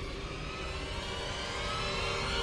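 Soundtrack sound design: a low rumbling drone under sustained held tones, like a passing engine.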